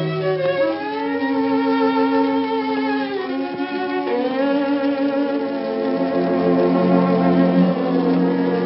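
A band's violin plays slow, held notes with wide vibrato over a bowed-string accompaniment, in an instrumental passage of a recorded Hungarian song. The melody moves to new notes about a second in and again about halfway through.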